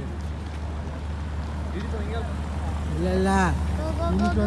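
Voices over a steady low drone, with short spoken or called phrases about two seconds in and again near the end.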